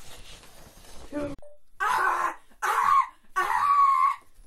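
A boy lets out three loud, wordless cries, each about half a second long and the last a little longer, about two, three and three and a half seconds in. Before them comes a rustle in the first second or so.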